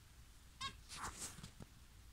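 Zebra finch giving a short call about half a second in, followed by a few fainter, high, brief chirps.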